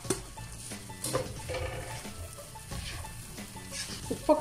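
A spatula stirring and scraping fried rice and chicken pieces in a non-stick pan, with a light sizzle from the hot pan.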